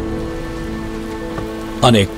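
Rain falling steadily, under a held, sustained music chord.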